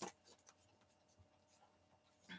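Near silence with faint tarot cards being handled: one soft click at the very start, then a few faint ticks.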